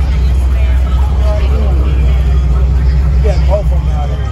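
A car engine running with a loud, steady low rumble, while onlookers' voices talk over it.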